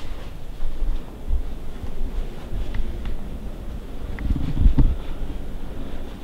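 Low rumbling handling and wind noise on a handheld camera's microphone as it is carried through a house, with a few faint taps, likely footsteps. There is a louder patch of rumble about four seconds in.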